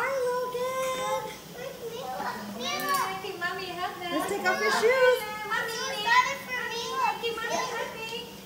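Young children's excited voices: high-pitched calls, shouts and squeals one after another, with no clear words.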